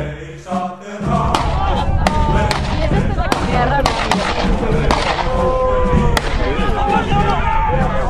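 A song stops about a second in. After it, a crowd of men shouts and yells together while scattered gunshots crack out every second or so.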